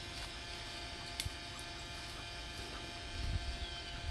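Steady electric hum of a bubble machine's small motor running, with a single sharp click about a second in.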